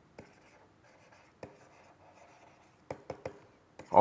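Stylus writing on a tablet surface: faint scratching of pen strokes with a few sharp taps, three of them close together near the end.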